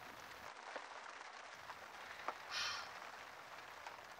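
Quiet, faint steady hiss of background ambience, with a short soft hiss about two and a half seconds in and a couple of faint ticks.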